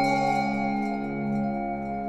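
Ambient instrumental background music: a held chord of ringing tones that slowly fades.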